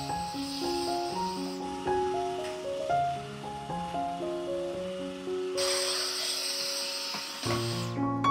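Light background music of stepped, piano-like notes, with a cordless Dyson stick vacuum running underneath it: a steady high whine with a hiss, heard until about a second and a half in and again from about five and a half to seven and a half seconds.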